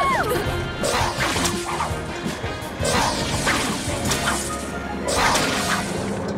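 Cartoon action sound effects over background music: a series of about five crashing, whooshing hits.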